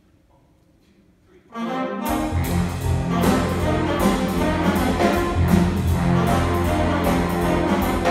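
Jazz big band starting a tune after a near-silent pause: the horns come in about a second and a half in, and the bass and drums join half a second later. The full band then plays on with a steady beat.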